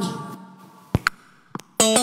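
A few sharp clicks and knocks from a handheld microphone being handled as it is swapped, then a song's backing-track music starts near the end.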